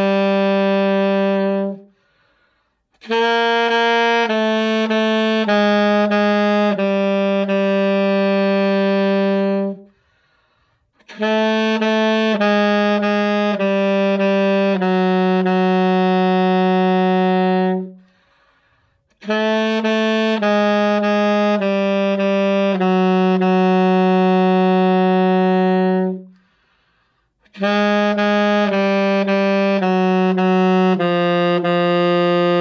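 Alto saxophone playing a low-register exercise unaccompanied: phrases of short notes that step down and settle on a long held low note. A brief breathing pause falls between phrases, about every eight seconds.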